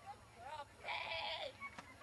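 Excited voices, with one drawn-out call lasting about half a second that starts about a second in.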